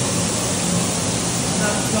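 Several taps and shower heads running full at once, their water splashing steadily into a stainless-steel trough, with a steady low hum underneath.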